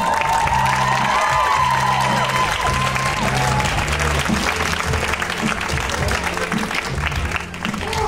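An audience applauds over the closing bars of dance music. The sliding melody stops about three and a half seconds in, and the clapping and a low bass line carry on after it.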